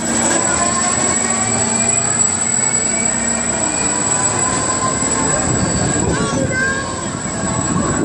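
Spinning-disc thrill ride in motion: a steady mechanical rumble with a constant high whine and slowly sliding squealing tones from its running gear. Riders' voices are mixed in, more clearly in the second half.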